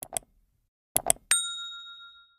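Animation sound effects: a quick pair of clicks, another pair about a second in, then a single bell ding that rings on and fades away, the clicks and bell of a subscribe-and-notification-bell reminder.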